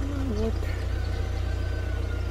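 Steady low rumble of a vehicle engine idling, with a faint thin whistle-like tone in the second half.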